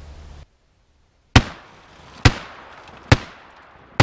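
Remington 870 pump-action 12-gauge shotgun firing rifled slugs into a car door: three loud shots about a second apart, each with a short echoing tail.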